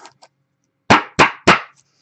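Three quick, sharp knocks about a third of a second apart, about a second in, from a trading card in a hard plastic card holder being tapped against the desk.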